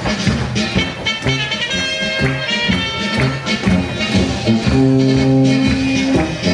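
Instrumental passage of an upbeat Danube Swabian polka, with a steady oom-pah bass beat under the melody and a longer held chord near the end.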